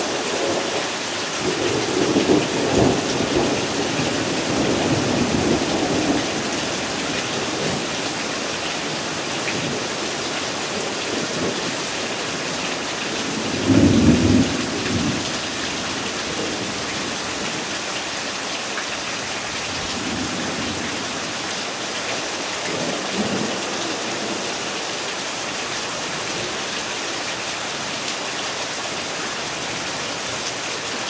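Steady hiss of a spring rainstorm falling on grass and trees, with low rumbles of thunder through the first few seconds, a louder rumble about halfway through, and fainter ones later.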